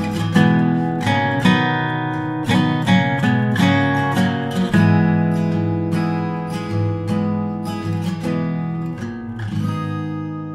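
Acoustic guitar background music: chords strummed and picked in a steady rhythm, slowly getting quieter over the second half.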